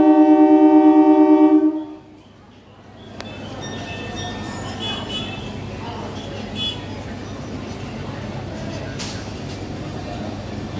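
Train horn sounding one long steady blast that cuts off about two seconds in. It is followed by the hubbub of a railway station platform with scattered voices.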